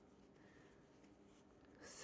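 Near silence: faint room tone with the soft rub of cotton yarn being drawn over a wooden crochet hook.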